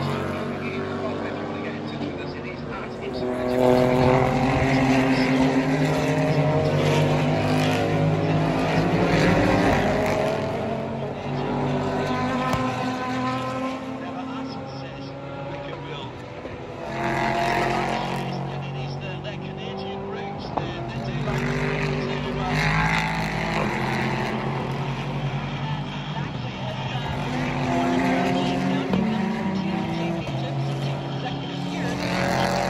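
Race car engines running on a road course as several cars go by in turn, the pitch shifting up and down with gear changes, louder in several swells as cars pass close.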